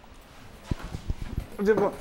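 A quick series of low, dull thumps and rustles from a clip-on lapel microphone knocking against a shirt as the wearer gets up. A man's voice starts just after.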